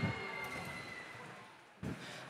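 Faint background noise of a robotics competition hall, with a thin steady high tone, fading out over about a second and a half and dropping briefly to near silence near the end.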